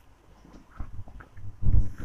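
Handling noise of a cotton silk saree being unfolded and lifted: soft rustling with dull, deep thuds, the loudest cluster near the end.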